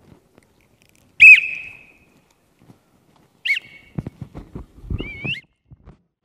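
Three short, high-pitched whistled notes, the first and loudest about a second in, the last one wavering. Several dull knocks come in the last two seconds, between the second and third notes.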